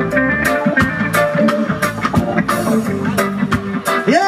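Live roots reggae band playing an instrumental passage with no singing: electric guitars, bass, drums and keyboard over a steady, regular beat.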